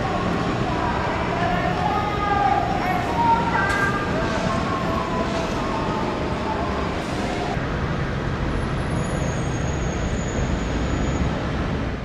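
Steady road traffic noise from cars and trucks moving along a busy terminal curbside roadway, a continuous low rumble and hiss.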